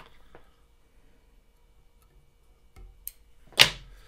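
Small handling sounds at a fly-tying vise: a few faint clicks in an otherwise quiet room, then one sharp, short noise a little past three and a half seconds in, the loudest sound.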